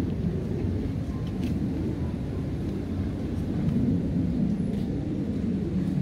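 Outdoor city street ambience: a steady low rumble, typical of distant traffic.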